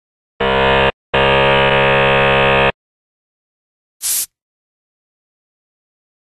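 Electronic buzzer: a short buzz and then a longer one lasting about a second and a half, followed by a brief burst of hiss about four seconds in.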